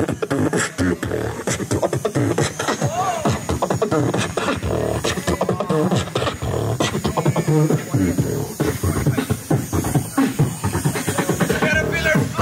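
A person beatboxing into a handheld microphone: a fast, dense run of vocal drum sounds, with a few hummed tones that rise and fall in pitch between the beats.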